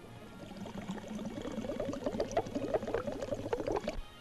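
Water bubbling and gurgling in a dense, busy stream, growing louder and cutting off abruptly at the end.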